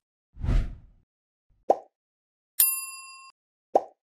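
Sound effects for an animated subscribe end screen: a soft whoosh, a short pop, a bright bell ding that rings out for under a second, then another pop near the end.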